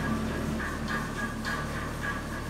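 Steady low hum of a hydraulic car parking lift's power unit running. Short, high warbling chirps come and go over it several times.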